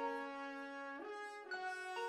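Music: a brass section playing held chords, stepping to new notes about halfway through and again near the end.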